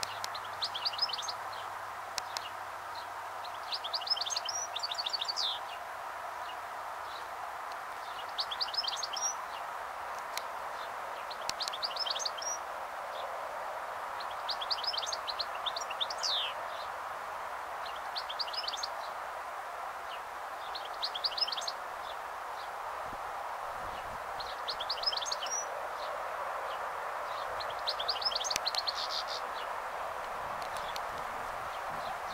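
European goldfinch twittering: short bursts of rapid, high tinkling notes, one every two to three seconds, over a steady background rush.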